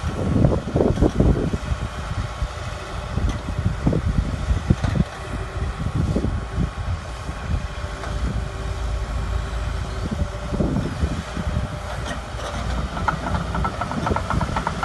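Hitachi ZX210 excavator's diesel engine running steadily under hydraulic work as the boom sweeps a ditch-cleaning bucket through the ditch, with irregular low thumps throughout. A fast series of clicks starts near the end.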